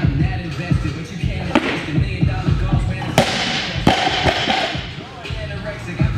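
Background music with a steady beat. About three seconds in, a loaded barbell with rubber bumper plates is dropped onto the lifting platform with one sharp, heavy impact and a short ring after it.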